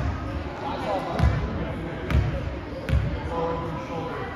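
A basketball dribbled on a hardwood gym floor at the free-throw line before the shot: several low bounces, roughly one a second, ringing in the hall.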